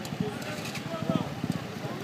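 Background chatter of a crowd of people talking, not close to the microphone, over a low rumble of idling scooter and small motorcycle engines.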